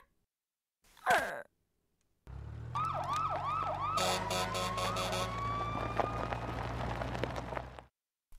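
Emergency-vehicle siren with an engine hum underneath. The siren starts with a rapid rising-and-falling yelp, several cycles a second, then changes to a longer rising wail. Shortly before the siren, about a second in, there is a brief falling cry.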